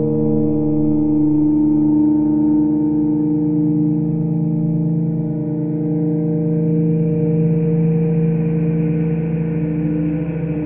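Experimental electronic (IDM) music: a sustained, layered synthesizer drone of several held tones that slowly shift, with a gong-like ring.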